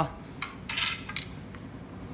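Fishing rods being handled, giving a few light clinks and scrapes between about half a second and just over a second in.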